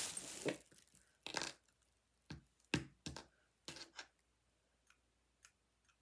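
Small hard objects being handled on a tabletop: a brief rustle, then a series of light, irregular clicks and taps.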